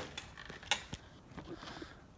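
Handling noise from a handheld camera being turned around: a few light clicks and knocks, the sharpest about two-thirds of a second in.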